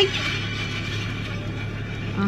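Audio of a video playing loudly from a smartphone inside a car cabin: a steady, even sound with no clear speech or tune, over a constant low hum.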